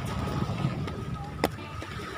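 Low outdoor background rumble with a thin steady tone over it and faint voices, broken by one sharp click about one and a half seconds in.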